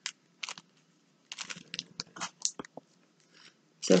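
An alcohol marker rubbing on paper in short, scratchy strokes, with a quick run of strokes in the middle as a drawing is coloured in.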